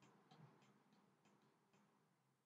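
Near silence with faint, short clicks, about three a second, from a computer mouse button being pressed and released while drawing.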